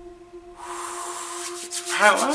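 Trailer soundtrack over a title card: a sustained low tone, joined about half a second in by a swelling hiss that turns fluttery near the end.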